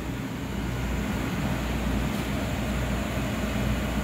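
Steady hum with an even rushing hiss: the running air pumps and filtration of a room full of aquarium tanks.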